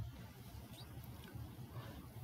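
Faint room tone: a low steady hum and light hiss, with no distinct event.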